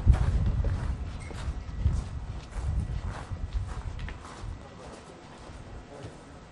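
Footsteps and shuffling on a hard concrete floor: irregular clicks and knocks over low thumps, fading toward the end.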